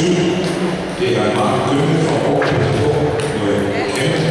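Steady chatter of voices filling a large sports hall, with a few sharp clicks of a table tennis ball being hit during a rally.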